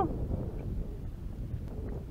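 Wind buffeting an outdoor action-camera microphone: a steady low rumble, with a couple of faint ticks.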